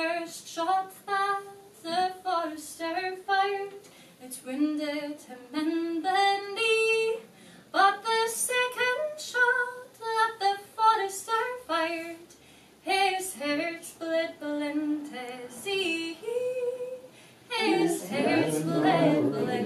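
A woman singing a traditional Scottish ballad solo and unaccompanied, in phrases with short pauses between.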